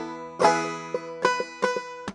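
Banjo in C tuning capoed up to E, a handful of plucked notes and strums ringing out, the loudest about half a second in.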